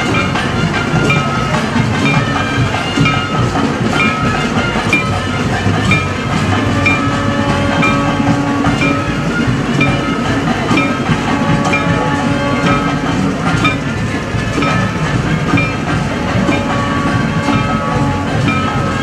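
Temple procession music: a reed pipe holds and shifts long notes over a steady, evenly spaced drum and cymbal beat.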